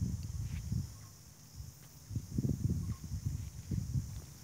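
Footsteps of someone walking along a grass vineyard row while filming, heard as irregular low thuds on the microphone, in a cluster about two seconds in and again near the end.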